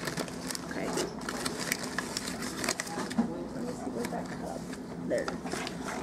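Rustling and small clicks of a paper flour bag being handled over a mixing bowl, over a steady low hum, with faint voices in the background.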